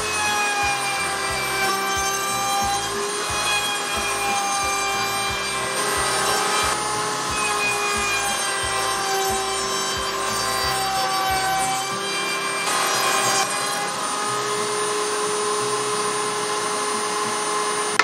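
Table-mounted wood router running with a roundover bit, cutting the edges of 4x4 pressure-treated wooden blocks: a steady high whine that sags a little in pitch as the bit bites into the wood.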